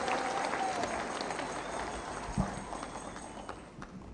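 A crowd applauding, scattered clapping that slowly dies away.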